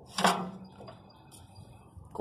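A single sharp metallic clack about a quarter second in, as the hinged license-plate bracket on a chrome van bumper is flipped up and shut against the bumper, followed by light handling.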